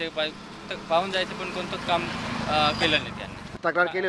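A man talking, with an engine running low and steady underneath him from about a second and a half in, cut off abruptly near the end.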